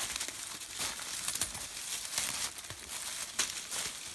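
Dry fallen leaves crunching and rustling under footsteps as a tracking dog and its handler move through the leaf litter, an irregular run of short crackles.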